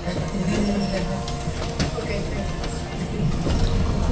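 Westinghouse/Spencer Selectomatic traction elevator car running, a low mechanical rumble with scattered clicks that swells about three and a half seconds in.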